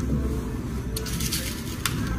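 Stiff gele headtie fabric rustling as fingers tuck it and pin it down, with a couple of brief scrapes about a second in and again near the end.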